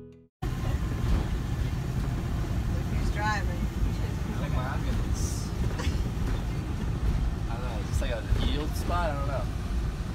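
Steady low road and engine rumble inside a motorhome's cab while it drives at highway speed, starting just after a brief silent gap.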